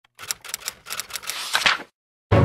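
Typing sound effect: a quick, irregular run of keyboard-style clicks as text is typed in, followed by a brief whoosh near the end as the picture turns over.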